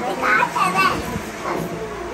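Young children's high-pitched voices talking and babbling.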